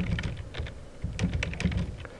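Computer keyboard being typed on: a quick, irregular run of keystrokes.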